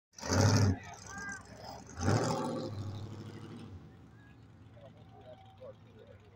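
A car engine revving hard in a burnout, in two loud blasts: a short one about half a second in and another about two seconds in. The second dies away over the next couple of seconds as the car backs off.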